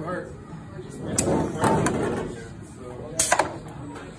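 Small PLC-controlled belt conveyor trainer at work as a block is set on the belt and carried along. A low running noise with a few sharp clicks, and a short sharp burst of noise about three seconds in.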